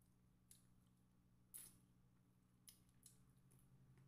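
Faint mouth sounds of someone chewing crispy fried chicken: four short, sharp crunches, the loudest about a second and a half in, over a low steady hum.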